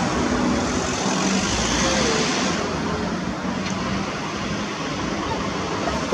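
Street traffic: a steady noise of road vehicles passing, with a faint engine hum.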